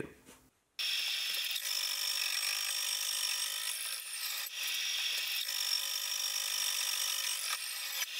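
Slitting saw on a milling machine cutting a slot into a steel sleeve: a steady, high-pitched whine with several held tones, starting about a second in.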